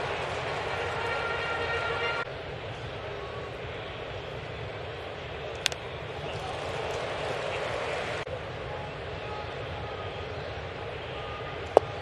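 Ballpark crowd murmur, with a single sharp crack of the bat as a pitch is fouled off about halfway through, and a sharp pop just before the end as a swung-at pitch smacks into the catcher's mitt.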